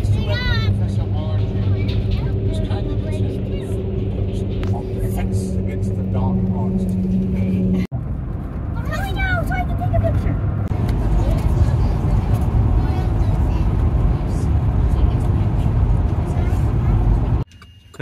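Road noise inside a moving car's cabin: a steady tyre-and-engine drone with a low hum while crossing a steel truss bridge, changing abruptly about eight seconds in to a rougher low rumble. Brief voices come through near the start and about nine seconds in.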